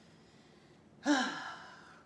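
A woman's breathy sigh about a second in, falling in pitch and fading away over about a second.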